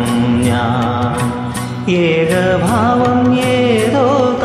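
Instrumental backing music of a Malayalam film-song karaoke track: wavering melodic instrument lines over a steady percussion beat.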